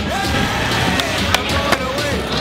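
Skateboards rolling and clacking on a skatepark floor, with three sharp board clacks in the second half, over background music.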